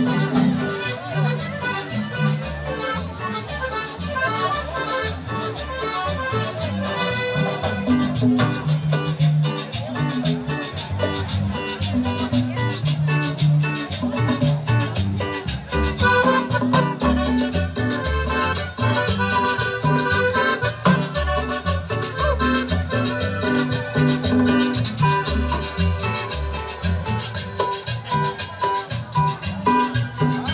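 Live chanchona band, a Salvadoran regional string ensemble, playing dance music with a steady beat and a prominent moving bass line.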